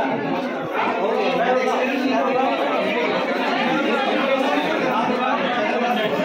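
Crowd chatter in a crowded hospital ward: many people talking at once, a steady hubbub of overlapping voices.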